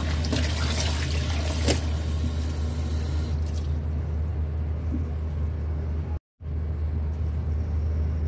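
Running water pouring onto wet red spinach leaves in a metal basin, as the leaves are rinsed, over a steady low hum. The sound drops out completely for a moment about six seconds in.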